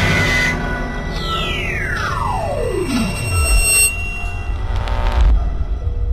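Eerie electronic film score: a tone sweeps steadily down in pitch for about two and a half seconds over a low rumbling drone, with a hiss of noise at the start and another near the end.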